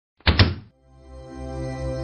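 Channel logo intro sting: a sharp double thud in the first half-second, then a held musical chord swelling in.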